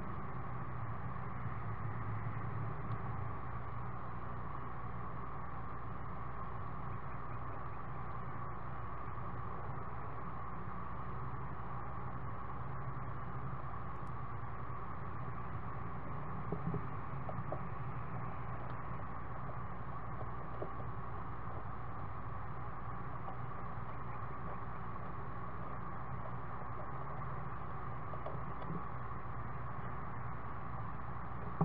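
Steady hiss and hum from a nest-box camera microphone, with a few faint scratches and taps about halfway through and near the end as the screech owl owlets shift on the wooden perch.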